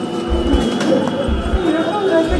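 People's voices chattering over a deep, low double thump that repeats about once a second.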